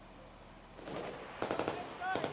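A rapid burst of automatic gunfire starting about one and a half seconds in, after a quiet moment with rising background noise.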